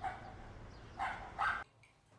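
A dog barking three times: once at the start and twice close together about a second in, over a steady low background rumble. The sound cuts off abruptly just after the last bark.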